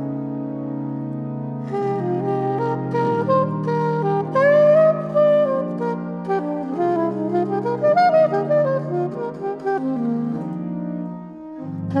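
Organ and saxophone duo: the organ holds sustained low chords alone at first, then the saxophone comes in after about a second and a half with a fast, wandering improvised line that rises and falls over the organ's changing chords, easing off near the end.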